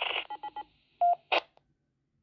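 Baofeng handheld transceiver's speaker at the end of a received transmission: a rapid string of about four short DTMF-style tone beeps, then a single beep about a second in and a brief burst of noise as the signal drops.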